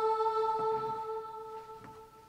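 A single held musical note with even overtones, the last note of a sample-based hip-hop beat fading out, with a couple of faint clicks.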